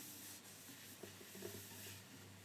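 Faint handling noise: soft rubbing with a few light ticks over a low steady hum, as the acoustic guitar and player shift into position.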